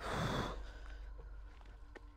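A brief splash of water, about half a second long, right at the start.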